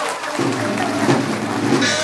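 Stage accompaniment music for Taiwanese opera: a steady held chord comes in about half a second in and sustains.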